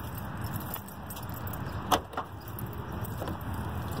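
Two sharp clicks about two seconds in, a moment apart, as an SUV's rear liftgate latch releases and the hatch opens. Under them runs a steady low drone of traffic from a nearby highway.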